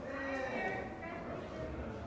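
Murmur of several people talking in a room, with one voice rising higher and louder for about half a second near the start.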